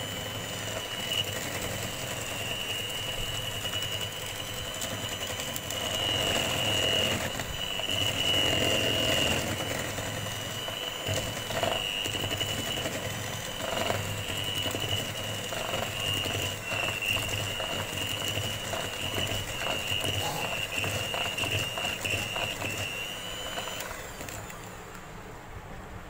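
Electric hand mixer running steadily with a high whine, its beaters churning powdered sugar and oil in a plastic bowl until the mix turns crumbly; the motor stops near the end.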